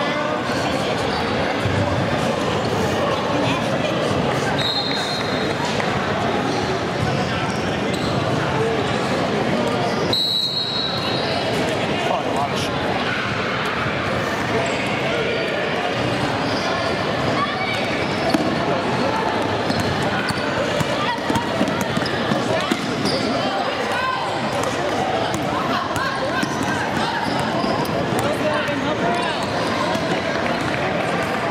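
Youth basketball game in a gym: a basketball bouncing on the hardwood floor under steady, indistinct talk from players and spectators. Two short referee whistle blasts, about five and ten seconds in.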